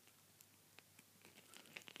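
Near silence, with a few faint ticks of a plastic action figure being handled in the fingers.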